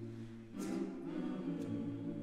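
Mixed-voice choir singing a cappella, holding a chord and moving to a new chord about half a second in.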